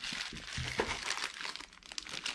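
Plastic packaging crinkling and crackling as it is handled, a pink bubble-wrap bag and a clear plastic bag, easing off shortly before the end.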